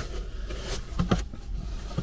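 Small cardboard accessory box being handled and opened by hand: a few soft scrapes and taps, most of them about a second in.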